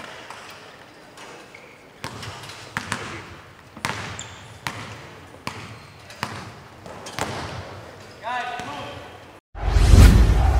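Basketballs bouncing on a hardwood court, a sharp bounce about once a second, under faint voices. Just before the end the sound drops out and loud music begins.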